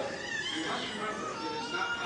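Speech in a large hall, with a high-pitched voice gliding up and down in pitch.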